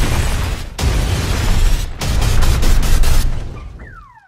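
Film-trailer sound effects of heavy crashing, booming impacts with a deep rumble, in three loud bursts cut by sudden brief silences. Near the end the rumble fades and a car alarm starts its repeating falling whoop.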